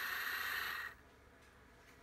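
Walthers HO-scale powered crane's small DCC-controlled motor and gearing running with a steady whine as the model moves along the track, cutting off suddenly about a second in as it stops against the gondola. Near silence follows.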